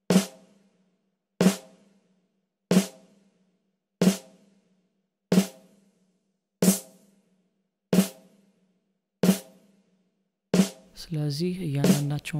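Recorded snare drum track played back on its own, repeating: single hits about one every 1.3 seconds, each with a short ringing decay. The hits are being reshaped by a live EQ: low end cut, a boost in the low mids and the high shelf raised for more brightness.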